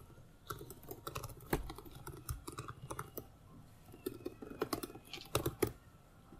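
Typing on a computer keyboard: quick, irregular keystrokes, with a few sharper key presses near the end.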